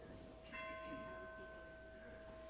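Organ playing softly: one note held throughout, and a bell-like note with bright overtones sounding about half a second in and slowly fading.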